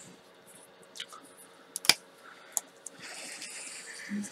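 A Spectrum Noir alcohol marker: its cap pulled off with one sharp click about two seconds in, then its nib rubbing faintly on paper from about three seconds as colouring begins.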